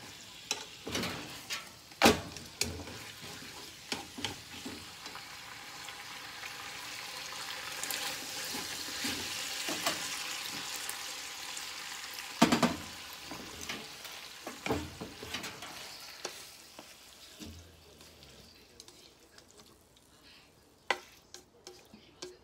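Pork and green peppers sizzling in a frying pan while being stirred with chopsticks, with sharp knocks of the utensils against the pan. The sizzle swells in the middle and dies down near the end.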